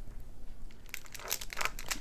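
Small plastic bags of diamond-painting drills crinkling as they are picked up and handled, starting about a second in.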